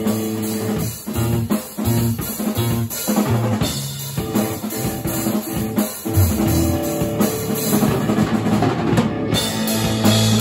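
Live rock band playing, the drum kit most prominent: kick, snare and rim hits in a driving beat over sustained electric guitar and bass notes.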